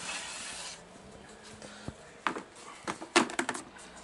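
A clear plastic storage tub slides out of a shelf rack with a brief scrape, then a few sharp plastic knocks and clicks as it is handled. The loudest cluster of clicks comes about three seconds in.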